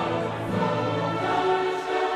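Background choral music: a choir singing long held notes.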